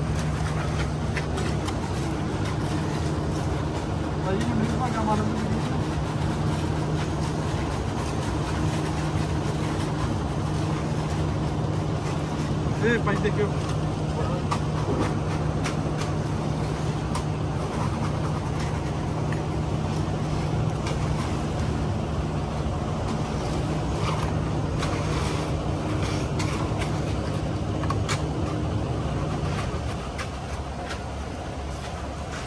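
Concrete mixer truck's engine running steadily at raised revs during a pour, a constant drone that drops off near the end.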